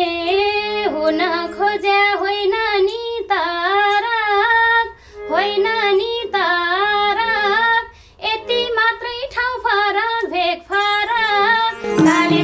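A woman singing a Nepali dohori folk song in a high voice, in melodic phrases with short breaks between them, with a few held harmonium notes underneath.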